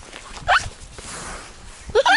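A sika deer gives one short squeal, rising in pitch, close by, followed by a soft rustling.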